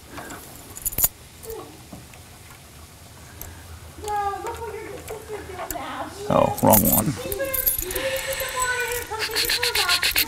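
Metal clicks and clunks of an aluminum ball mount being fitted into an SUV's receiver hitch, with keys jangling over the last couple of seconds. From about four seconds in, a child's high voice rises and falls.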